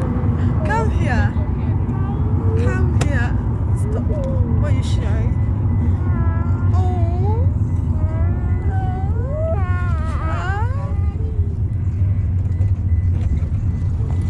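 Steady low road rumble inside a moving car's cabin, with high, sliding, wordless voice sounds coming and going over it for most of the first eleven seconds.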